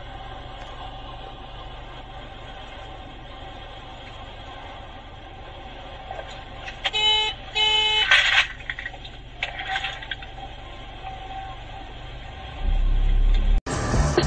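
Steady in-car road and engine noise while driving, broken about seven seconds in by two short car horn honks as another car pulls in close alongside. Near the end a loud low rumble starts.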